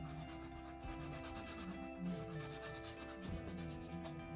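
Quick, repeated rubbing strokes, several a second, over soft background music. The rubbing stops about three seconds in.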